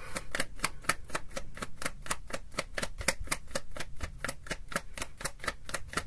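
A tarot deck being shuffled overhand: a quick, even run of small card clicks, about five or six a second.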